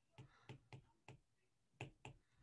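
Faint, irregular clicks of a stylus tapping on a tablet screen during handwriting, about six in two seconds.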